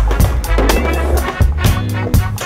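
Hip-hop soundtrack with a steady bass line, drum hits and horns. A skateboard rolling on concrete sounds under it.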